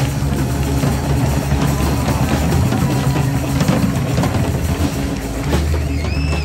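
Live band playing, led by a drum kit with electric guitar and bass guitar over a steady bass line.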